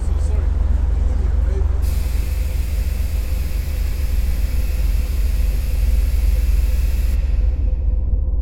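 Steady low rumble of city street traffic, with a hiss that starts abruptly about two seconds in and stops about five seconds later.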